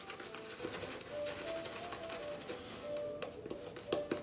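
Synthetic shaving brush working shaving cream into a lather on the face: a soft, faint brushing swish. In the middle a faint tune of a few plain held notes is heard.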